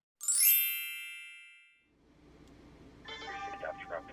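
A bright chime sound effect rings once and fades away over about a second and a half.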